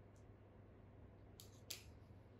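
Small screwdriver set down on a tabletop: two light, sharp clicks close together about a second and a half in, over near silence with a faint low hum.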